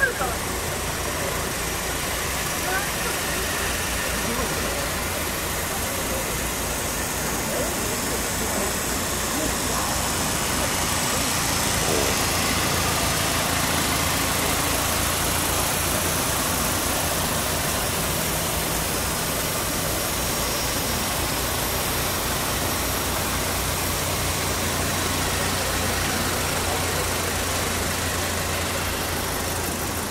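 Car engine idling steadily, its low hum growing a little louder about halfway through.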